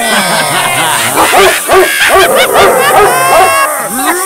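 Cartoon animal-character voice effects. A voice slides down in pitch over the first second, then comes a rapid string of short, high, rising-and-falling yelping calls.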